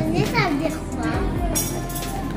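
Voices talking over background music with a steady low hum, and a brief high-pitched sound about one and a half seconds in.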